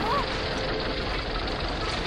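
Cartoon machinery sound effect: the wooden gears of an animated study-desk machine turning as a sheet of paper feeds over a roller, a steady mechanical rumble and whir.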